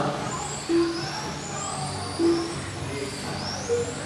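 Electric RC touring cars with 21.5-turn brushless motors running laps, their high whine rising and falling in pitch with throttle. Three short beeps about a second and a half apart sound over it.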